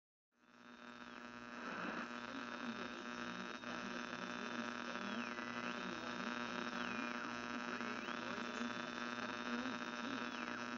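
Faint electrical hum with a hiss, fading in about a second in, under a thin high whine that repeatedly slides down in pitch and back up.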